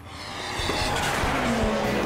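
Short TV-show logo sting: music mixed with car sound effects, swelling up over the first half second.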